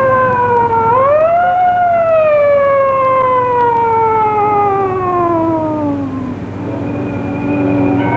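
A siren wailing: one rising sweep about a second in, then a long, slow fall in pitch that dies away around six seconds in, over background music.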